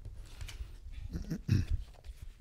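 Sheets of paper being shuffled and picked up from a desk, with short scattered rustles and taps. A short, low voice sound, like a grunt, about one and a half seconds in is the loudest thing.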